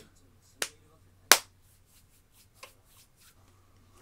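A few sharp taps or clicks of handling noise, the loudest about a second in and a fainter one near the middle.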